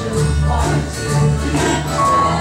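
Three acoustic guitars strummed together with voices singing along in an upbeat pop-soul tune.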